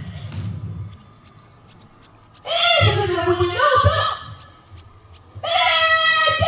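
Drawn-out shouted drill calls from soldiers on parade, two of them about three seconds apart, each lasting around a second and a half with a quieter gap between.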